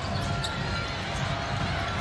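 A basketball being dribbled on a hardwood court over steady arena background noise.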